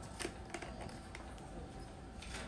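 A couple of faint clicks as plastic headrest shell parts are handled and seated on a laser welder's optical head, over a low steady background hum.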